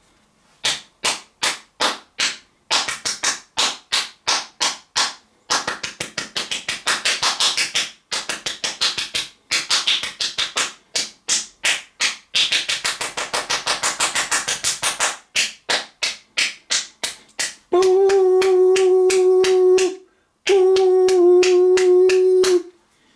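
Sharp hand-made clicks and claps, in spaced runs of about three to four a second with faster flurries, then a steady note held by voice twice near the end.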